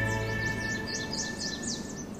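A television show's opening theme music dying away on a held chord, with quick, high, falling bird chirps repeating over it.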